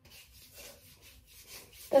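Hands rubbing sunscreen into the skin of the forearms: a quick run of soft swishing strokes, a few a second.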